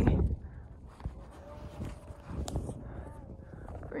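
Phone being handled and bumped while a rubber strap is fitted around it: scattered light knocks and rustles, with one sharp click about two and a half seconds in, over a low rumble of wind on the microphone.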